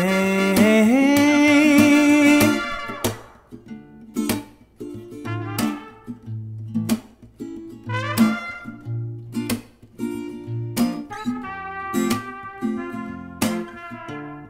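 Instrumental break of an acoustic folk-pop song. A trumpet holds wavering notes for the first three seconds. After that, picked acoustic guitar notes lead, with short trumpet phrases coming back in near the middle and toward the end.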